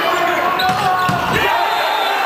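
Volleyball rally in a gymnasium: a crowd and players shouting over one another, with the thuds of the ball being hit and landing on the hardwood.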